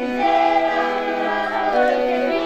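A group of children singing a folk song together, accompanied by an accordion, in held notes that move from chord to chord.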